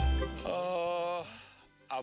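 Background music: a held note with a slight vibrato over low bass, fading away in the second half.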